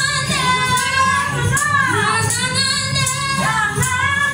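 Woman singing a soul song over backing music, her voice sliding up and down through long held notes and runs.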